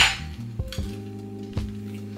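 A few light clinks of a knife and utensils against a plate while food is handled, over soft background music with held notes.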